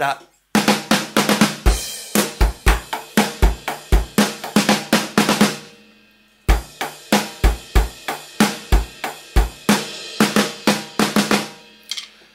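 Electronic drum kit played through its sound module: a rock beat of bass drum, snare and cymbals ending in a snare-drum fill, played twice with a short pause between.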